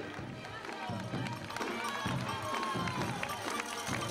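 Roadside crowd of spectators clapping and calling out as runners pass, with music mixed in.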